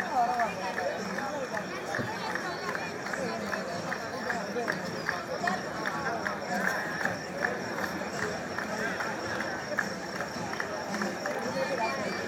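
Voices of spectators and players around a kabaddi court, a steady mix of talk and calls with many quick short taps throughout.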